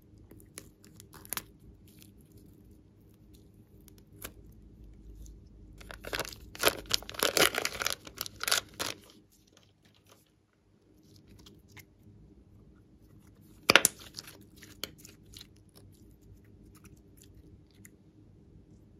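Scissors snip a plastic piping bag once, then sticky slime is squeezed out of the bag and worked by hand, giving a dense stretch of crackling, squelching pops midway. A single sharp click comes near the end.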